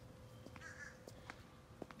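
A bird calling faintly once, just under a second in, over quiet outdoor background with a few faint clicks.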